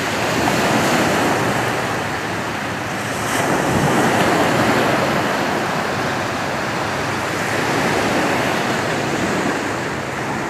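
Ocean surf: waves washing onto a beach, a steady rush that swells and eases every few seconds.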